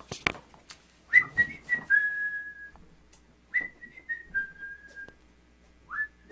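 Someone whistling a short tune: the same phrase twice, a few quick notes and then a longer, slightly lower held note, with another note rising in at the very end. A few sharp clicks come first.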